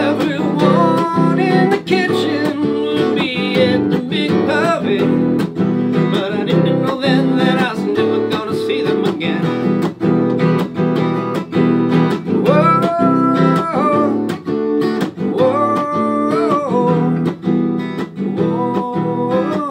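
Takamine cutaway acoustic guitar strummed in a steady rhythm, with a man's voice singing over it in places, most clearly in the second half.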